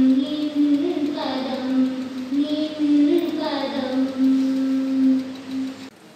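Children singing a slow song in long held notes, stopping suddenly near the end.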